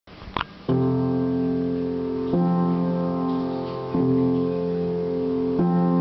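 Upright piano playing four slow, full chords, one struck about every second and a half and each left to ring on, with a short click just before the first chord.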